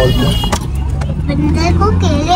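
Low steady rumble of a Toyota Corolla's engine and tyres heard from inside the cabin as the car moves slowly along the road, with voices over it. A high steady tone sounds briefly at the start.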